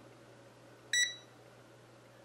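Venlab VM-600A digital multimeter's buzzer giving one short, high beep about a second in, the key-press confirmation as a front-panel button is pressed.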